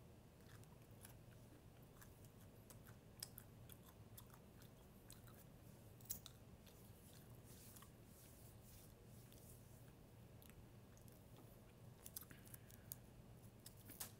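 Very faint chewing of honey roasted peanuts, heard as scattered soft crunchy clicks over near silence, the most distinct at about three and six seconds in.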